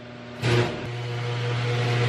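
Overhead garage door opener starting with a clunk about half a second in, then its motor humming steadily and growing slowly louder as the sectional door rolls down.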